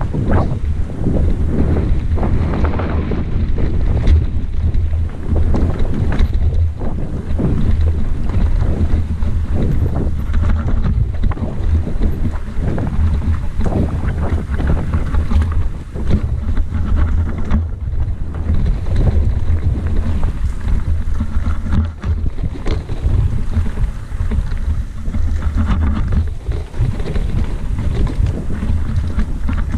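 Wind buffeting the microphone of a camera riding on a mountain bike, with the bike rattling and knocking over a rocky dirt trail on a fast downhill descent. A steady heavy rumble runs under frequent short jolts and clatters from the rough ground.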